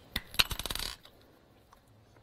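Small craft items handled on a craft mat: two sharp clicks, then a brief clattering rattle of about half a second.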